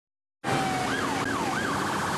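Emergency vehicle siren, starting abruptly about half a second in with a brief held note, then sweeping rapidly up and down over steady background noise.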